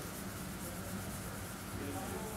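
A sponge rubbed over the surface of a marble block, a soft steady scrubbing, as the stone is cleaned of deposits. A steady low hum lies under it.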